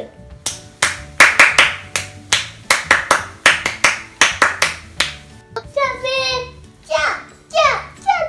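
Hand claps in a quick, uneven run of about twenty, roughly four a second, played to a baby who loves clapping. After about five seconds the claps stop and high-pitched child voice sounds follow.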